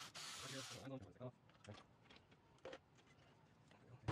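Near silence: faint room tone, with a brief faint hiss in the first second and a few faint clicks.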